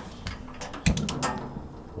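Gas grill being lit: a quick run of sharp igniter clicks about a second in, with a low thump as the burner catches easily.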